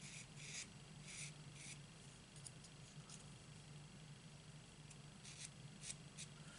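Faint, short strokes of an ink marker's nib rubbing along the edge of a small strip of cardstock as it is coloured in: a few in the first two seconds and two more near the end, over a low steady hum.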